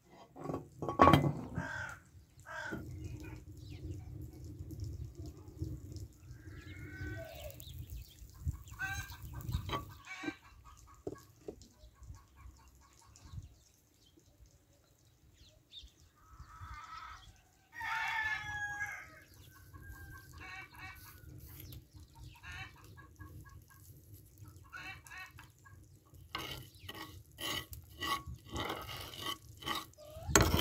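Chickens clucking and a rooster crowing, with the strongest crow about eighteen seconds in, over a low rumble during the first ten seconds. Near the end comes a run of quick knocks and clicks.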